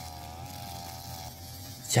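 Brush cutter engine, fitted with a nylon-line head and a cutting blade, running at a steady high buzz whose pitch wavers slightly as it is swung through grass; the buzz is faint.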